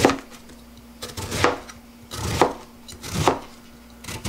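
Kitchen knife slicing through a large winter radish onto a plastic cutting board: about four crunchy cuts roughly a second apart, the first the loudest.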